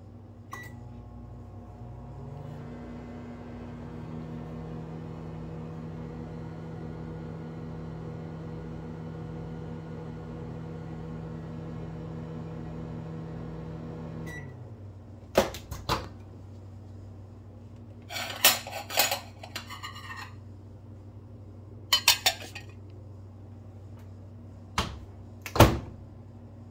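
GE over-the-range microwave oven: a keypad beep, then the oven running with a steady hum for about twelve seconds, ending with a beep. After it stops come sharp clicks, clattering of dishes, and a loud knock near the end.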